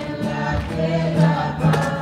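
A group of voices singing a religious song together.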